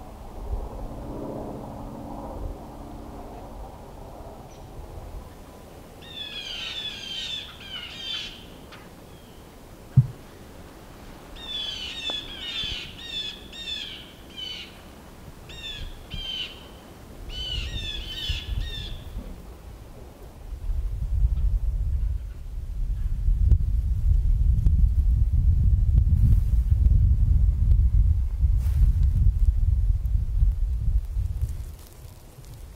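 A bird calls in three runs of quick, short, downward-sliding notes spread over about a dozen seconds. A single sharp click falls between the first two runs, and from about two-thirds of the way in a loud low rumble takes over.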